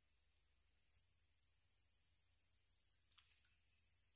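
Faint, steady high-pitched insect chorus, its pitch stepping up slightly about a second in, with a few faint ticks near the end.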